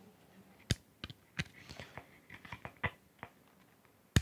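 Faint plastic clicks from a two-pin cable plug being worked into the side accessory jack of a Baofeng UV-5R handheld radio and the radio being handled: one sharper click just under a second in, then a scatter of lighter clicks.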